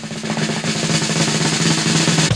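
Recorded snare drum roll sound effect: a fast, continuous rattle over a low steady tone, growing a little louder as it goes.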